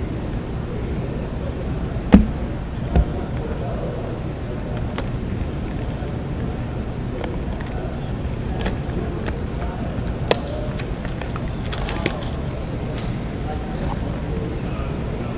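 Sealed 2015 Topps Strata football card box being handled and unwrapped: plastic shrink wrap crinkling and a few sharp knocks against the cardboard, the loudest two about two and three seconds in, over steady low background noise.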